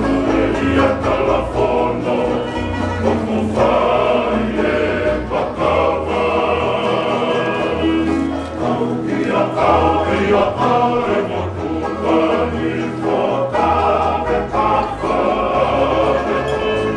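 Tongan kalapu string band: a group of men singing together in harmony to several strummed acoustic guitars, over sustained low bass notes that change every second or two.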